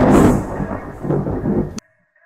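Loud, low thunder-like rumble, a sound effect under the closing logo, cut off suddenly near the end.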